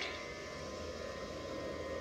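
A steady hiss with a faint hum and no distinct event: the background noise of a TV soundtrack playing from laptop speakers, picked up by a phone.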